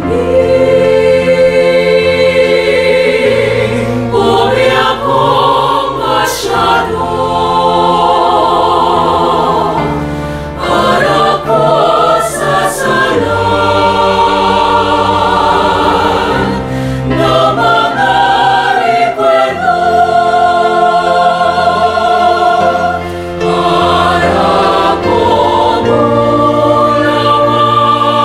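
Mixed choir of men's and women's voices singing in harmony, holding long chords that change every few seconds, with a few brief hissed consonants.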